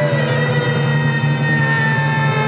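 Live Chhau dance music: a reed pipe of the shehnai kind holding one long, slightly sagging note over a steady low drone.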